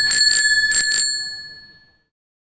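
Bicycle bell rung in a quick run of dings, its ringing fading away over the second half.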